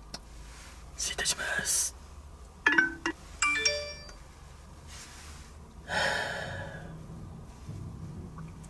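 A short bell-like chime about three seconds in: a few sharp ringing tones that step downward. Brief bursts of noise come before it, and a louder one that fades out follows about six seconds in.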